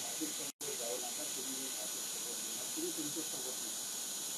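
Steady recording hiss with faint, indistinct voices underneath. The sound cuts out completely for a split second about half a second in.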